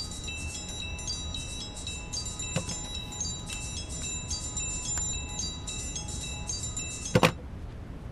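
Smartphone ringtone: a bright melody of short, high chiming notes repeating over and over. It is cut off near the end by a sharp knock, as the call is rejected.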